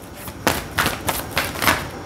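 A tarot deck shuffled by hand, the cards striking together in about five quick strokes, roughly three a second.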